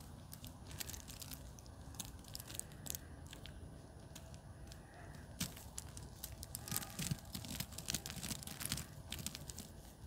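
Onion seedlings being pulled apart by hand from a root-bound clump, the roots and potting soil tearing and crackling in a run of small faint clicks that grow busier in the second half.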